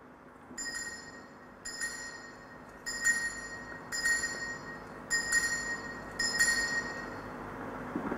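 Six evenly spaced metallic ringing strikes, about one a second, each ringing on briefly with clear high tones. They mark the elevation of the consecrated host at Mass.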